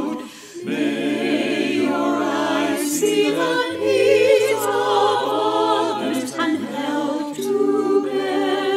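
Small mixed choir of men's and women's voices singing a hymn in parts, with a brief breath break about half a second in. The sung line is "may your eyes see the needs of others and help to bear their load."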